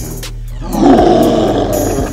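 A dinosaur roar sound effect for a toy Tyrannosaurus rex, swelling about half a second in and fading away near the end, over background music.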